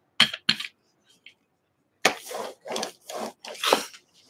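A hand brayer handled and rolled over paper: two quick knocks near the start, then four rubbing strokes, about two a second, in the second half.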